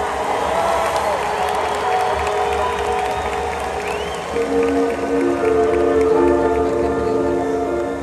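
Music over an arena sound system: long sustained chords, with a new set of held notes coming in about four seconds in, over the steady noise of a large cheering crowd.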